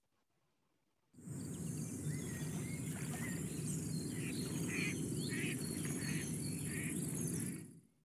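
Outdoor nature ambience: birds chirping and calling over a steady insect drone and a low rumble. It starts suddenly about a second in and fades out just before the end.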